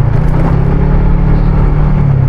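Motorcycle engine running at a steady speed while riding, with road and wind noise.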